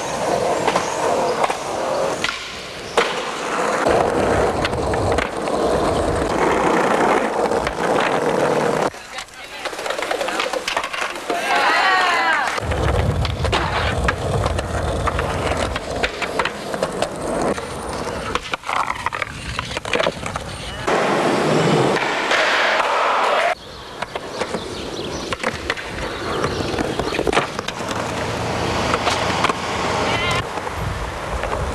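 Skateboards on pavement: wheels rolling, with many sharp clacks from tail pops, landings and a rail grind.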